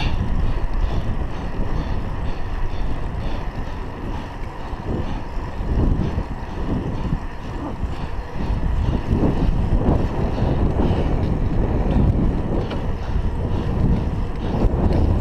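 Wind buffeting a chest-mounted GoPro Hero 3's microphone while cycling along a road, a steady low rumble that swells and eases and grows a little louder after about eight seconds.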